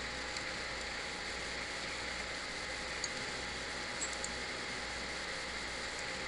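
Steady background hiss with no speech, with two faint clicks about three and four seconds in.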